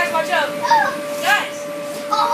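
Children's voices in several short, high calls and squeals over the steady hum of an inflatable bounce house's electric air blower.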